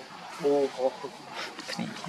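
Speech: a short spoken exclamation, "oh", about half a second in, followed by a few brief, fainter voice sounds.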